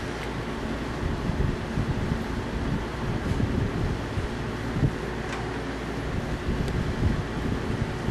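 Steady low rumble and hiss of background noise, with a faint short bump about five seconds in.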